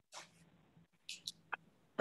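Faint noise on an open meeting audio line: a few short hissy puffs and a brief click over a low steady hum.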